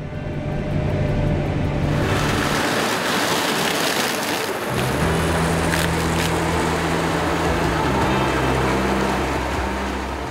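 Claas Lexion 570 Terra Trac combine harvesting grain maize: a steady engine drone under a dense rushing noise of crop going through the header and threshing system. The low engine tones grow stronger about halfway through.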